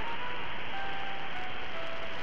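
Shortwave AM receiver hiss with a faint melody of pure single notes, changing pitch every few tenths of a second, coming through the static. It is the music programme of Radio Havana Cuba's spurious signal on 10080 kHz.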